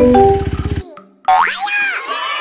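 Cartoon background music, a quick run of short notes, cuts off a little before a second in. After a brief pause comes a springy cartoon sound effect whose pitch rises and falls back.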